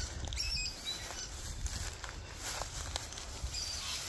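Footsteps rustling through long grass, over a steady low rumble on the phone's microphone.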